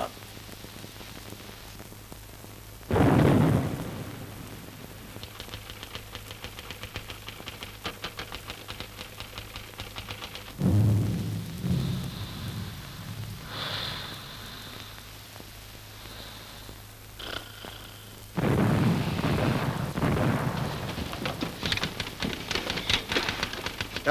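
Artillery shell explosions on an old film soundtrack: one sudden heavy burst about three seconds in, another near the middle, and a longer one near the end, with a faint fast ticking in between.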